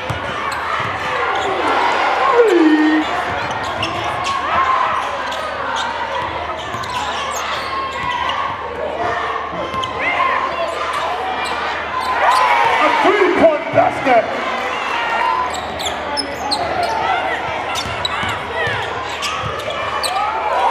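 Basketball game sound in a gymnasium: a basketball dribbling on the hardwood court over a crowd's steady chatter and shouts, with many short sharp ticks, all echoing in the large hall.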